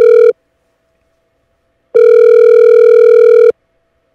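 Telephone ringing tone on a call line as a dropped caller is being reconnected: a loud steady electronic tone that cuts off just after the start, then sounds again for about a second and a half from about two seconds in.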